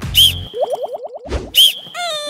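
Cartoon-style sound effects added in editing. Two sharp, loud hits with a high ringing tail come about a quarter of a second in and again near the end, with a quick run of short rising pitch sweeps between them.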